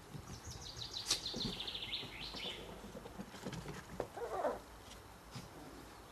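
A wild bird singing a fast trill of high chirps over the first half, then a short yip from the playing cocker spaniel puppies about four seconds in.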